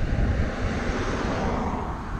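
Wind rumbling on a wearable camera's microphone, with a rushing swell about a second in.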